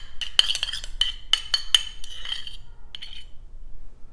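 Metal spoon clinking and scraping against a small stainless steel bowl while scooping sauce: a quick run of ringing taps through the first two and a half seconds and one more near three seconds.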